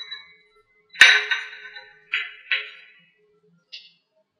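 A china teacup clinking against its saucer as it is set down: one sharp clink about a second in, two lighter clinks about a second later, and a faint tap near the end.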